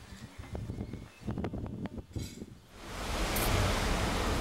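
Faint scattered clicks and taps, then about three seconds in a steady rush of car engine and road noise heard from inside the car's cabin.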